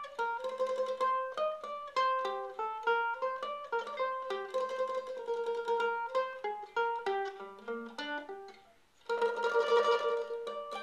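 1939 Gibson F4 carved-top mandolin played solo with a pick: a single-note melody of quick picked notes on the paired steel strings. Near the end the line drops to the low strings and fades almost away, then fuller notes come in together, louder.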